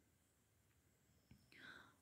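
Near silence in a pause in a woman's talk, with a faint short breath near the end.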